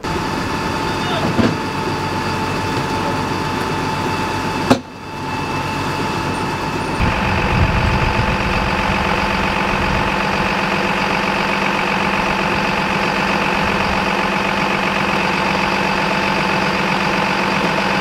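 Fire engine's diesel engine running steadily at close range, getting louder and fuller about seven seconds in. A single sharp click cuts through it near five seconds.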